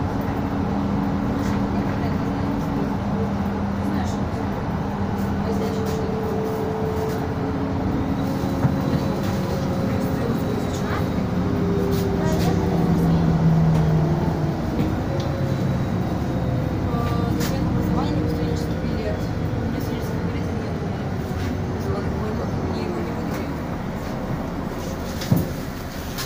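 City bus driving along, heard from inside the passenger cabin: a steady rumble of engine and road noise with a drone that shifts pitch as the bus goes, and a short knock about nine seconds in.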